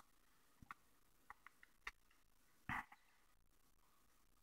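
Near silence with a few faint, short clicks of a paper dollar bill being handled and creased between the fingers, and one brief louder sound just under three seconds in.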